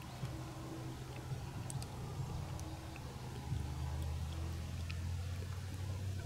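A van's engine idling with a steady low hum, a little louder about halfway through.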